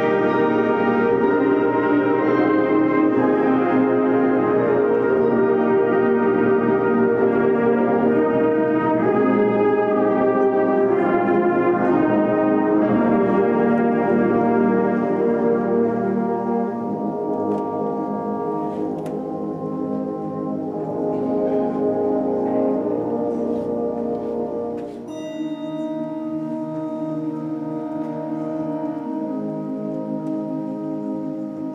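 School concert band playing sustained brass and woodwind chords, loud at first and growing softer after about sixteen seconds. About twenty-five seconds in, quieter low chords continue under a few high ringing tones.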